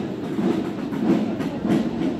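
Many boots of a marching column striking asphalt in step, a steady tramp of about two steps a second.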